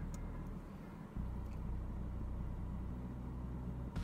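Low steady hum inside a car cabin, with no speech. The hum drops briefly and comes back abruptly about a second in.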